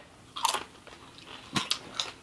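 Crunching bites into a pizza-flavoured Doritos tortilla chip: one crunch about half a second in and another, shorter one past the middle.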